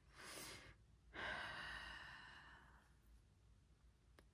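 A woman draws a short breath, then lets out a long sigh that fades away over about two seconds.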